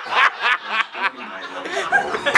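A person snickering and chuckling in short, broken bursts of laughter.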